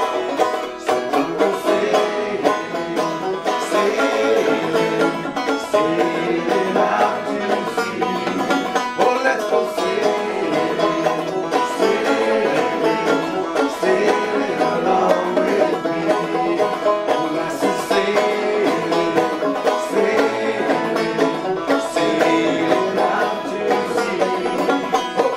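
Solo banjo playing an instrumental passage: a steady, unbroken run of plucked notes with no singing.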